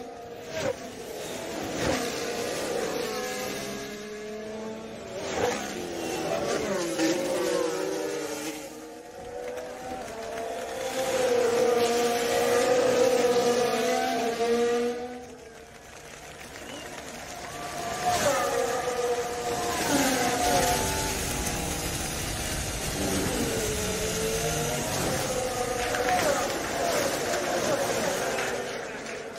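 Formula 1 cars' turbocharged V6 hybrid engines running at racing speed, their pitch rising with the revs and sweeping down as cars pass, several times over.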